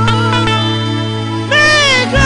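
Gospel music: a woman sings into a microphone over a steady low accompaniment note. About one and a half seconds in, her voice comes in loud on a high note that slides downward.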